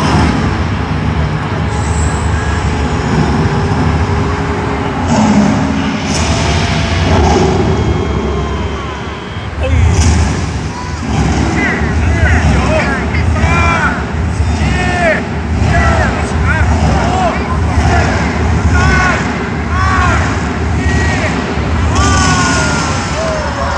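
Loud show soundtrack over an arena sound system: a heavy bass pulse about once a second from about ten seconds in, with repeated rising-and-falling pitched sweeps, voice-like or synthesized, above it.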